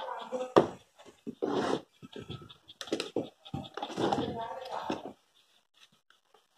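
A man's voice speaking softly in short bursts, with a few sharp clicks in between, and going quiet about five seconds in.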